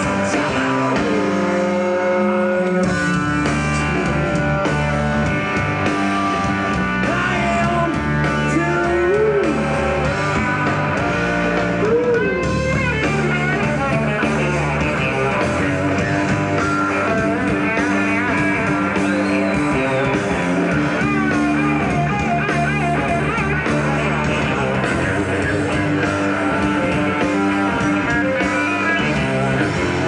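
Live rock band playing a song: electric guitar, bass guitar and drums, with some singing.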